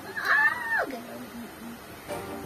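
A cat meowing once: a single long meow that holds high, then slides down in pitch about a second in and trails off.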